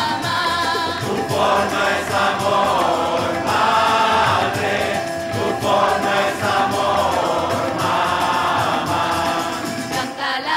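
A large choir, mostly women's voices, singing a devotional song together.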